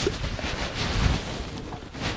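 A rushing noise, like a water splash or wind sound effect, that starts abruptly and swells about halfway through.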